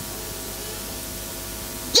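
Steady static hiss from the microphone and sound system, with a faint low hum and no speech.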